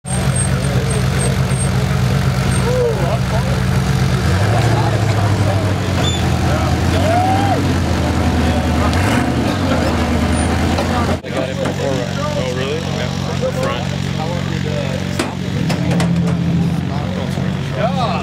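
Ultra4 off-road race car's engine running at idle, its pitch held a step higher for a few seconds partway through, with crowd voices around it.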